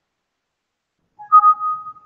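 Computer alert chime: two steady electronic notes sounding together, starting about a second in and lasting under a second, typical of the Windows system sound that comes with a warning dialog.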